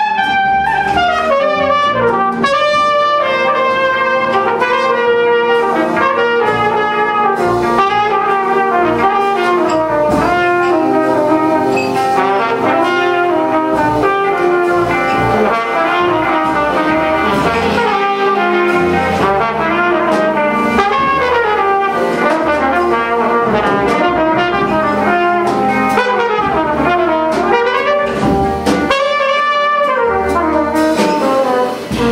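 Live jazz combo: a trumpet plays a flowing melodic line over hollow-body electric guitar, upright bass and drum kit.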